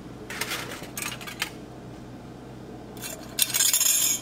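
Small metal objects clinking as they drop into a glass dish on a kitchen scale: paper clips and wire whisk balls, in two bursts of rattling clinks, one about half a second in and a denser one near the end.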